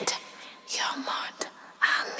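A voice whispering a few short, breathy words, with no music behind it.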